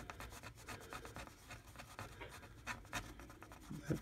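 A coin scratching the coating off a scratch-off lottery ticket: a quick run of short, faint scrapes.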